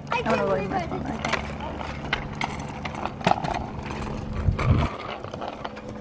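Longboard wheels rolling on a concrete sidewalk, with irregular knocks as the board runs over the slab joints.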